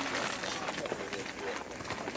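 Faint voices of people talking in the background over a steady outdoor hiss.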